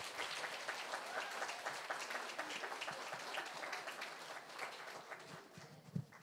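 Audience applauding with many hands, dying away near the end.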